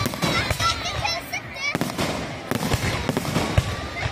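Aerial fireworks bursting in quick succession: a dense run of sharp bangs and crackling, with the loudest bang near the end.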